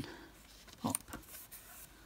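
Light handling of paper: die-cut cardstock pieces being lifted out, with a couple of soft taps a little under a second in and a brief faint rustle after.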